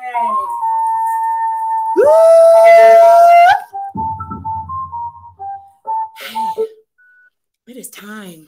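A woman's voice sounding high, wordless notes: a held note, then a louder long note about two seconds in that slides up into it and up again at its end, followed by a string of short broken notes.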